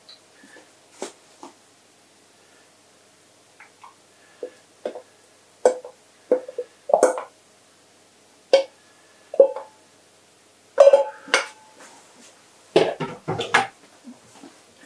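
A utensil knocking and scraping against a metal pan while food is spooned out of it: a string of short, ringing clinks and taps. They are sparse at first and come in quick clusters towards the end.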